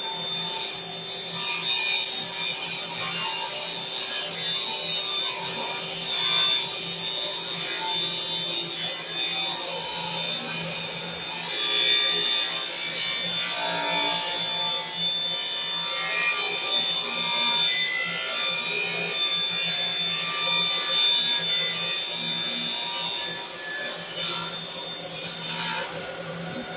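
Table saw ripping a sheet of quarter-inch plywood lengthwise, the blade cutting steadily through the wood, with a shop vacuum running for dust collection.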